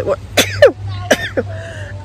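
A woman coughing a few times in quick succession, short coughs with her hand over her mouth.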